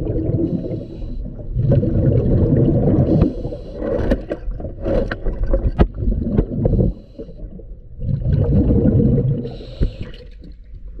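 Diver breathing through a regulator underwater: long, bubbly rumbles of exhaled air, twice broken by a short hiss of inhalation, with a few sharp clicks.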